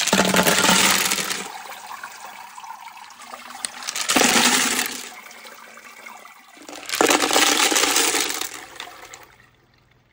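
Tumbled rocks and wet grit slurry poured from rock-tumbler barrels into a stainless steel colander, the rocks clattering against the metal as the slurry runs through. There are three pours about three to four seconds apart, each loud at first and then tailing off. The barrels are being emptied after a week of first-stage tumbling in coarse grit.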